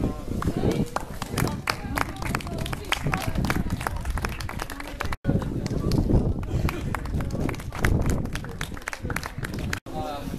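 A small outdoor crowd clapping in scattered, uneven claps, with indistinct voices underneath. The sound drops out sharply twice, about halfway through and just before the end, where the recording is cut.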